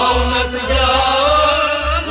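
Male voice singing a Kashmiri Sufi kalam with a wavering, ornamented line, over instrumental accompaniment with a steady low beat.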